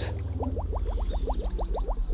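Cartoon bubble sound effects: a quick run of short rising bloops, about six a second, with a few high tinkles near the end, over a low steady music drone.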